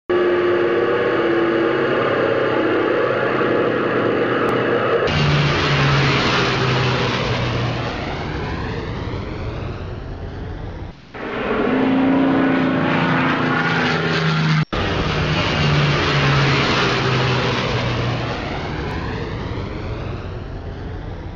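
Steady drone of piston aircraft engines, laid down in spliced segments that change abruptly about five, eleven and fifteen seconds in.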